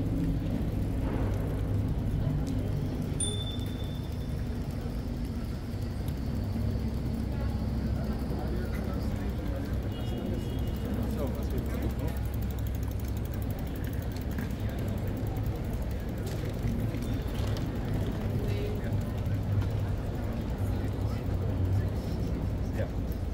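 Street ambience of a busy pedestrian zone: passers-by talking indistinctly over a steady low rumble.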